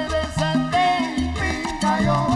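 Salsa band playing live, with an upright bass line stepping from note to note under the rest of the band.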